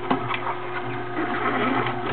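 Omega slow-turning auger (masticating) juicer running with a steady motor hum as endive is fed into its chute, with two sharp clicks just after the start.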